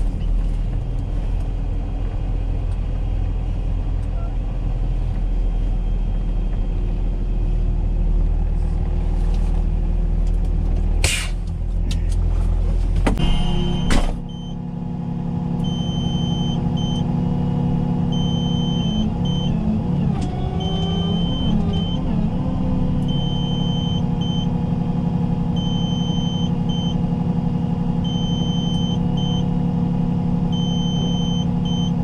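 Heavy rotator tow truck driving on the highway, its engine and road noise a loud low drone inside the cab. About fourteen seconds in the sound changes abruptly to the truck idling at a standstill, with a high electronic beep sounding on and off.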